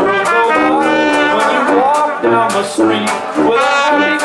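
Small traditional jazz band playing: trumpet and trombone lines over a tuba, banjo and washboard rhythm section.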